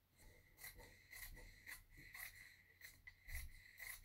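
Faint brushing and rustling of hands smoothing a large sheet of fabric flat on a wooden table, in a run of short, irregular strokes.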